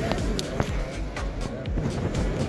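Background music playing over crowd chatter.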